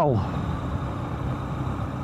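A 125 cc motorcycle engine running steadily at an even cruising speed of about 50 km/h, under a steady rush of wind and road noise on the microphone.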